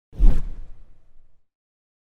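A single whoosh transition sound effect that swells in quickly just after the start and fades away over about a second.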